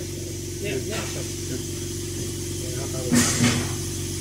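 Steady low machine hum with faint background voices. A brief burst of hiss and noise comes about three seconds in.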